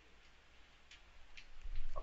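A quiet pause in a recorded conversation: a low steady hum with two faint soft clicks, and a voice starting up just before the end.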